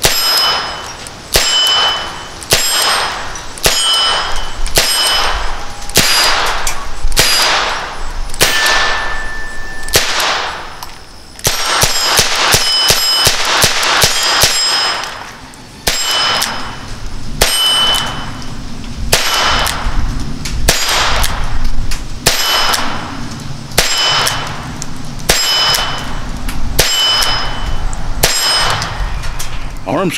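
A Diamondback Sidekick .22 revolver firing CCI 40-grain standard-velocity lead round-nose .22 Long Rifle, about one shot every second and a quarter. Each sharp report is followed by a brief metallic ring. The shooting comes in strings, with short breaks partway through.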